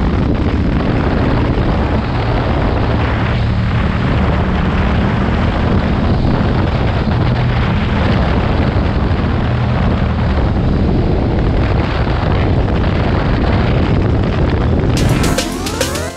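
KTM 1190 Adventure S's V-twin engine running steadily at cruising speed, with wind rush on the chin-mounted camera. Music comes in about a second before the end.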